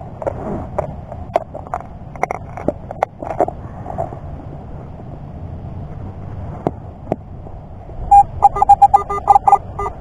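Digging knife and hands working wet soil and turf, short scrapes and clicks, then from about eight seconds a Garrett AT-series metal detector sounding a rapid run of target beeps, about five a second, signalling a buried metal target.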